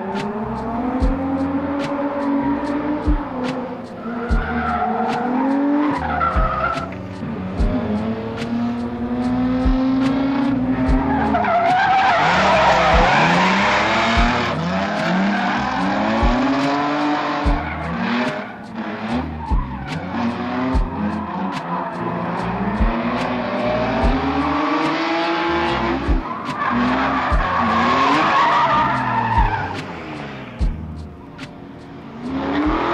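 A drift car's engine revving up and down through a run while its tires skid and squeal, with the longest, loudest stretches of tire noise about halfway through and again near the end.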